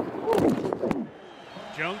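Men talking on the field for about a second, then a short lull of stadium crowd noise before a radio play-by-play announcer starts calling the snap near the end.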